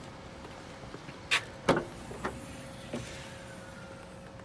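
Rear hatch of a 2016 Hyundai Veloster being unlatched and lifted open: a sharp latch click, then a few lighter clicks and knocks as the liftgate rises.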